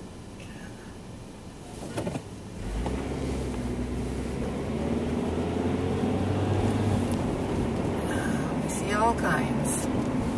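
Car heard from inside the cabin, idling quietly at a standstill, then pulling away from about three seconds in, with engine and road noise rising and holding as it gathers speed. There is a short click just before it moves off.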